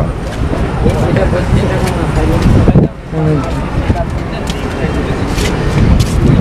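Indistinct voices of people talking over a steady low rumble, with a brief dip in level just before three seconds in.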